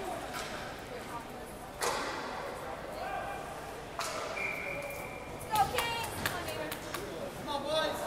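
Voices chattering and echoing in an ice hockey arena, with two sharp knocks about two and four seconds in. Just after the second knock comes a thin, steady high tone lasting about a second.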